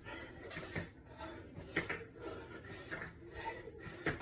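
Feet landing on an exercise mat in switch lunges done with dumbbells: short thuds about once a second.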